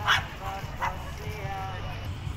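A dog barking twice, the first bark right at the start and the second a little under a second later, over faint background voices.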